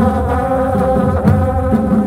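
Traditional Himachali folk band music: wind instruments hold a melody over steady drum beats.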